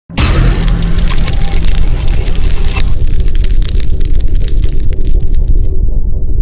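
Logo-intro music and sound effects: a sudden loud hit over a heavy bass rumble, with crackling sparkle up high. The bright top end fades about three seconds in and is cut off near the end, leaving only the deep low sound.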